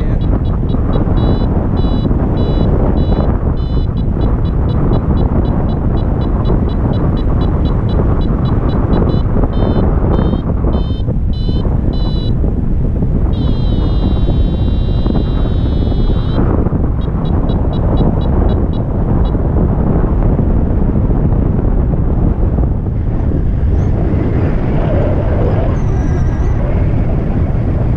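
Wind rushing over the microphone of a paraglider in flight, with a flight variometer beeping in quick short bursts, about four a second, its climb tone signalling rising air, for roughly the first twelve seconds. About halfway through it changes to a continuous wavering tone for about three seconds, then gives a few more beeps.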